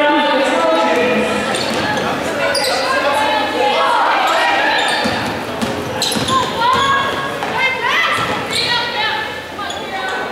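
Basketball game in play on a hardwood gym floor: the ball bouncing, sneakers squeaking in short high chirps, and players' and spectators' voices, all echoing in a large gym.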